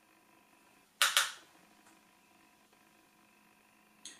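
A sharp double click, two quick clacks about a second in, from a small hard object being handled, over a faint steady hum.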